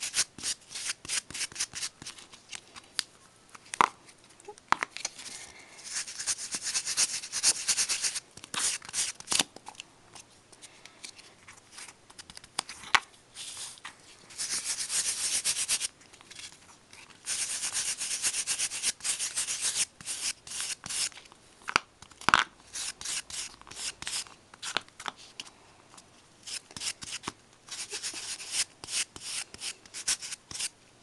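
A folded piece of card scrubbed over card stock to blend ink: a dry, scratchy rubbing in runs of quick strokes, some stretches going on unbroken for two or three seconds, with short pauses between.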